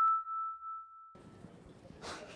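Single chime note of an intro sound logo, ringing out and fading over about a second and a half. Faint room tone of a hall follows near the end.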